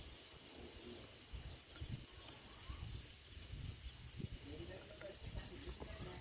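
Faint sounds of liquid pesticide being poured from a plastic bottle into a plastic sprayer tank, with soft handling knocks over a steady low hiss.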